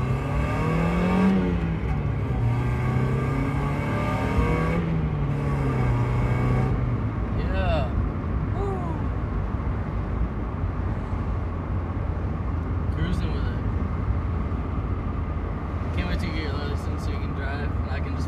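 NA Mazda MX-5 Miata's four-cylinder engine with a resonator-deleted exhaust, heard from inside the cabin: it revs up under acceleration, drops at a gear change about a second in, climbs again and drops near four and a half seconds, then settles to a steady cruise.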